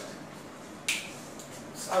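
A single sharp plastic click about a second in, from a whiteboard marker's cap being snapped shut, over faint room hiss.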